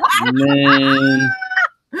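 People laughing: a long, low, drawn-out vocal sound with a higher, squealing laugh over it, which breaks off about a second and a half in.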